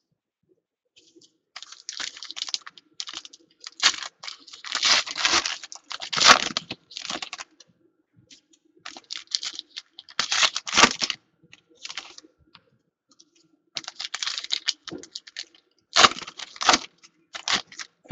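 Foil wrappers of football trading card packs crinkling and tearing as they are opened by hand, in irregular crackly bursts.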